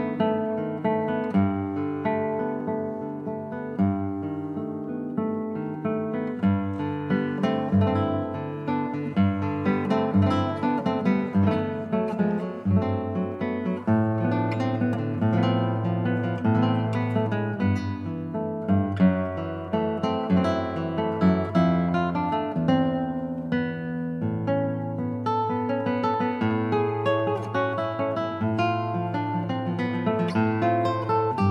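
Solo classical guitar played fingerstyle, a plucked melody over sustained bass notes.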